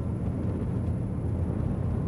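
Twin 1,200hp MAN V8 diesel engines running at full throttle, heard from the enclosed lower helm as a steady, very muted low drone, with very little hull noise.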